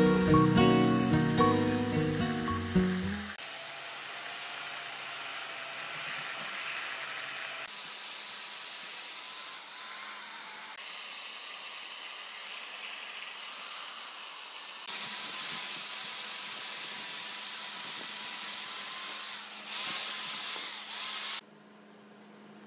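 Acoustic guitar music for the first three seconds, then a chainsaw ripping lengthwise into a log: a steady, even cutting sound that shifts in level a few times and stops abruptly shortly before the end.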